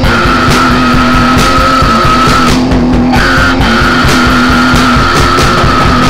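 Loud, heavy sludge-style rock with drums and a low distorted guitar riff under a high held note. The high note breaks off about two and a half seconds in and comes back about half a second later.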